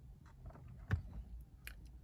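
Faint handling noise from a sheet of paper being moved: a few soft clicks and rustles, the loudest just before a second in.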